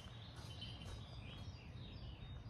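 Quiet outdoor ambience: a low steady rumble with a few faint, distant bird chirps.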